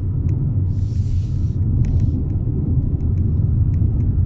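Inside the cabin of a Volvo XC40 D3 on the move: a steady low rumble of the 2.0-litre diesel engine and tyres on the road, with a brief rushing hiss about a second in and a few faint clicks.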